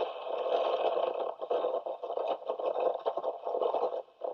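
Shortwave radio static: a narrow-band hiss that crackles and flickers unevenly, as heard on a numbers-station receiver recording.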